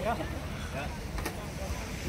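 Uneven low wind rumble on the microphone, with brief snatches of nearby talk.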